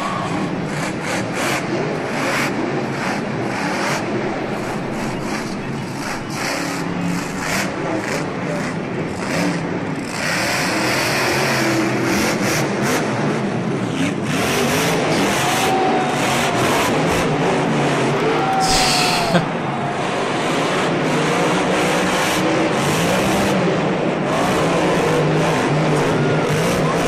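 Supercharged monster truck engines revving hard, the pitch rising and falling as the throttle opens and shuts, with a brief high hiss about three quarters of the way through.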